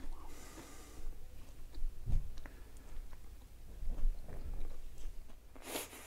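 Chewing of small pieces of dry, brittle freeze-dried steak: faint, irregular crunching like biting into a cracker, with one somewhat stronger crunch about two seconds in.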